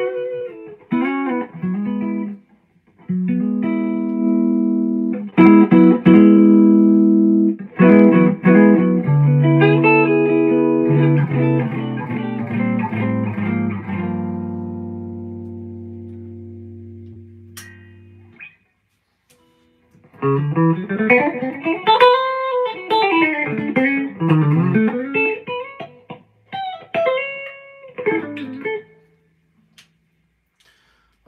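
Gibson Les Paul electric guitar played: chords and notes that ring and fade out over several seconds. After a short pause comes a single-note lick whose notes slide and bend up and down in pitch.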